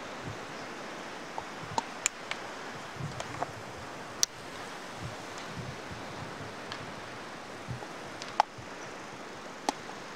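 Steady outdoor hiss of wind, with scattered sharp clicks and taps as small painting gear is handled, the loudest about four seconds in and again past eight seconds.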